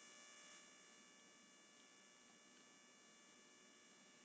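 Near silence: faint steady background hiss and hum of the recording.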